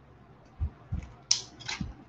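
Plastic shrink wrap being pulled off a book: a couple of soft knocks from handling, then two short crinkling rips in the second half.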